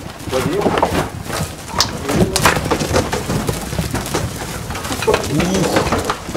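Sheep scrambling in a pen while a ram is being caught: repeated knocks and scuffles of hooves and bodies against the wooden trough and fence, with low cooing calls mixed in.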